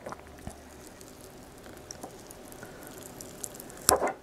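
Faint scratching and small clicks of tweezers picking at the cells of a papery wasp nest comb, with one sharper click near the end.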